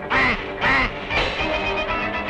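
Cartoon duck quacking: three short quacks about half a second apart, the third softer, over orchestral background music.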